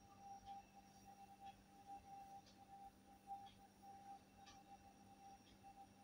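Near silence, with a faint steady tone underneath.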